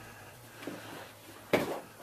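Quiet handling of small product boxes being sorted through, with a faint tap and then one short, sharper knock about one and a half seconds in.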